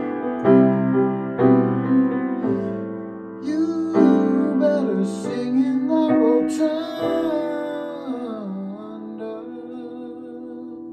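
A man singing at a grand piano: chords struck in the first seconds, then sung lines that slide and bend in pitch through the middle, with the sound fading near the end.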